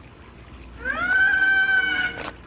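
A high-pitched squeaky squeal that rises and then holds one steady note for about a second, starting about a second in, with a short click just after it ends.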